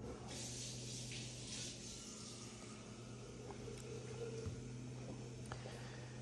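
Quiet handling of small rubber parts and a glue brush at a tabletop: a soft hiss in the first couple of seconds and a few faint ticks later, over a steady low hum.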